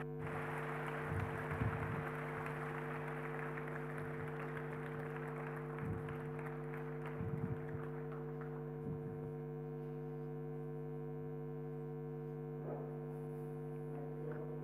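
Audience applauding at the end of a lecture, the clapping thinning out and dying away over about eight seconds. A steady electrical hum from the hall's sound system runs underneath.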